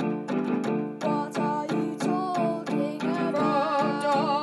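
Song with steady strummed guitar accompaniment, about three strokes a second. A singing voice holds a wavering note with vibrato near the end.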